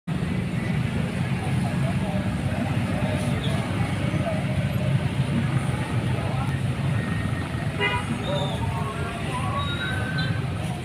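Dense street traffic of motor scooters and cars moving slowly, with a steady engine rumble and people's voices mixed in. A short horn toot sounds about eight seconds in.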